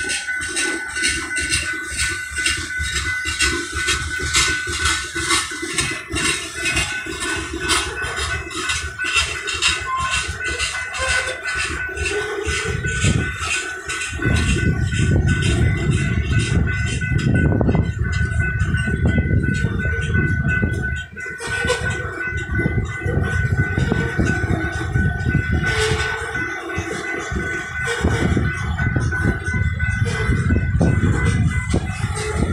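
Loaded rock-train hopper cars rolling past, their wheels rumbling on the rails under a steady high-pitched squeal. The rumble grows much louder about halfway through as heavier running passes close by.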